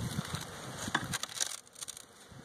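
Wooden beehive cover being worked loose and lifted off: scraping and cracking, with a few sharp clicks in the second half.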